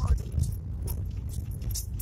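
Inside a Suzuki Swift hatchback driving slowly over a rough dirt road: a low rumble of tyres and suspension with irregular jolts, and light rattling and clinking in the cabin as the car bounces over the ruts.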